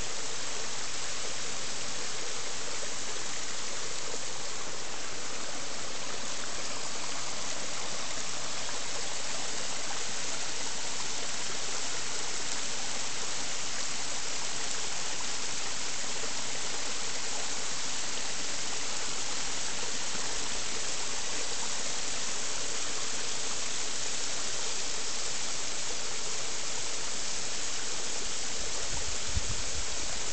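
Water rushing steadily over rocks in a small creek fed by a wet-weather waterfall, a constant even hiss with no breaks.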